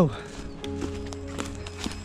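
Running footsteps on a leaf-littered forest trail, a soft thud about every half second, over background music with held notes.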